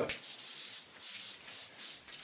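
Felt-tip marker scratching on a sheet of paper in a run of short, quick strokes as a small figure is drawn in.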